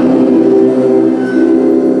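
A choir of mostly female voices holding a steady sustained chord.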